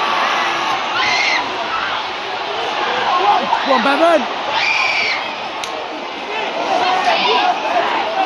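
Rugby league stadium crowd: a steady din of many voices, with single spectators shouting and calling out above it, loudest around four seconds in.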